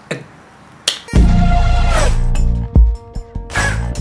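Tightly compressed electronic pop track with a heavy bass beat and a sung vocal line, cutting in suddenly about a second in after a brief quiet pause.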